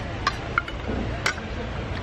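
A few light clinks of a metal fork against a plate over a steady low background hum.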